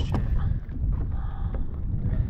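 Wind buffeting the microphone, a steady low rumble, with a light knock just after the start and another about three quarters of the way through.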